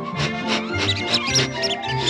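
Orchestral cartoon score, with a kitten's high squeaky mews in a quick run of short squeaks over it in the second half.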